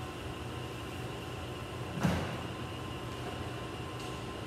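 An inflatable Fit Bone balance platform thumps once on the tiled floor or wall as it is stood on end, about halfway through, over a steady mechanical hum.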